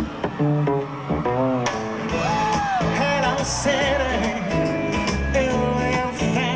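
Live band music: a male lead vocal sung over acoustic guitar, upright bass and drums.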